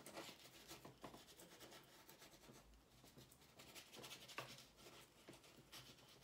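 Faint rubbing and scratching of a painting tool working paint onto a stretched canvas in short strokes, with one small sharper click a little past four seconds.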